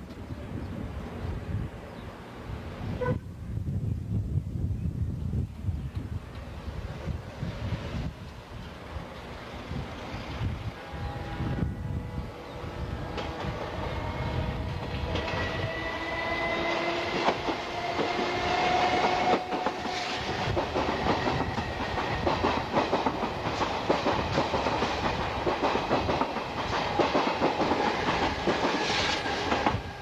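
Electric commuter train approaching and passing: a rumble and wheel clatter over the rails that grow louder toward the end, with a faint whine rising slightly in pitch in the middle.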